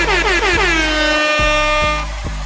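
Air horn sound effect: a few quick blasts that swoop down in pitch, running into one long held blast that stops near the end, over background music with a steady beat.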